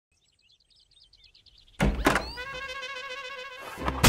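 Film soundtrack sting: faint high chirping, then about two seconds in a sudden deep boom, a quick rising sweep, and a held, wavering chord that swells into another hit at the end.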